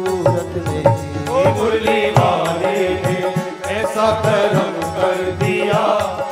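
Live Hindu devotional bhajan music: a melody line over a steady, regular drum beat, played between sung lines of the song.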